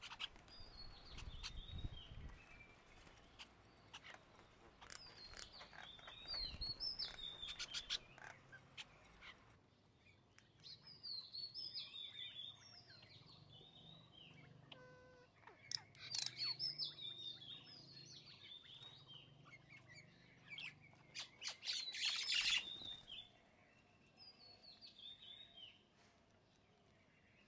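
Small songbirds chirping and calling in several bouts of quick, high chirps and short falling whistles, with a louder burst about three-quarters of the way through.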